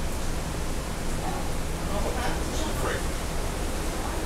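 Wind blowing over the microphone: a steady rushing noise with low rumble, with faint voices of people talking under it.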